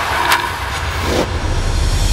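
Whooshing transition effects over a deep, steady rumble in a TV sports-show opening theme: a sharp whoosh near the start and a short rising sweep just after the middle.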